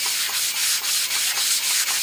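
Sandpaper rubbed by hand over a bare-wood Peavey Reactor guitar body in quick back-and-forth strokes, giving a high hiss that pulses with each stroke, about three to four a second.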